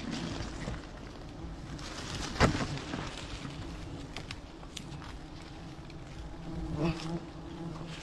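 A swarm of honey bees buzzing steadily close by. There is a sharp crackle of palm fronds being handled about two and a half seconds in, and a smaller rustle near the end.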